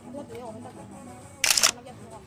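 Smartphone camera shutter sound as a photo is taken: one quick double click about one and a half seconds in, over faint background chatter.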